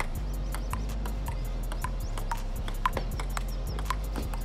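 Table tennis rally: the ball clicking off paddles and the table about twice a second in a sharp, short-ringing knock, over background music with a steady beat.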